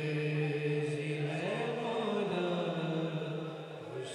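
Male voices chanting a manqabat in long held notes, with one slow rise and fall in pitch about halfway through.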